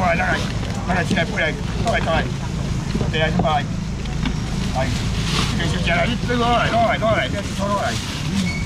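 Several people talking and calling at once among a market crowd, over a continuous low rumble.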